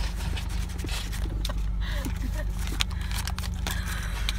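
Steady low rumble of a moving car heard from inside the cabin, with scattered short rustles and clicks of things being handled close to the phone.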